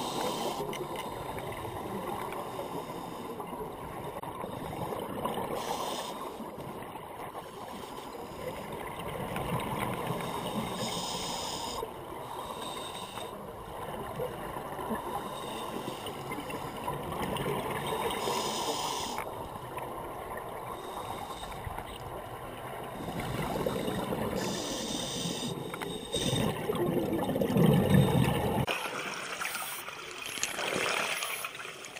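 Scuba breathing heard underwater: the hiss of air drawn through a regulator every few seconds, with bubbling exhalations, the loudest a little before the end.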